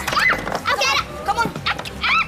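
Children's voices calling out excitedly, the words unclear, with a few short clicks among them.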